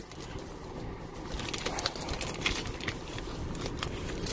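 Clear plastic packaging being rummaged and handled, with scattered crinkles and light taps starting about a second in, over a low steady background rumble.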